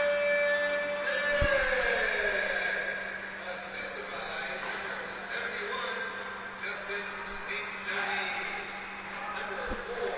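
Ice hockey rink during play: skates scraping the ice and sticks and puck clacking, over a steady low electrical hum. At the start a held tone slides down in pitch and fades out by about two seconds in.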